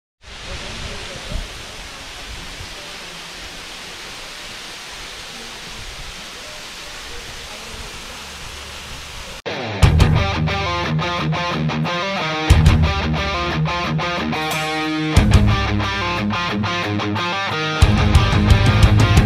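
A waterfall's steady rushing water noise. About halfway through it cuts off abruptly and louder rock music with a strong beat takes over.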